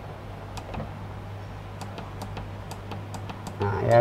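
Buttons on a filling machine's digital controller keypad being pressed, a series of light, irregular clicks while its filling time is set, over a steady low electrical hum from the machine.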